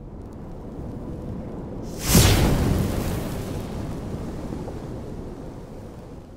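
Cinematic logo-reveal sound effect: a low rumble, then a sudden loud whooshing boom about two seconds in that slowly dies away.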